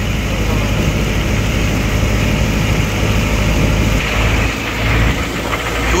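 A boat's engine running steadily, a low continuous drone under the passing water.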